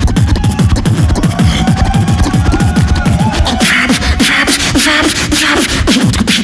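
Human beatboxing through a microphone and PA: a rapid run of deep bass kicks, each falling in pitch, several a second. A steady tone is held over them for a couple of seconds, and hissing snare-like strokes come in after the middle.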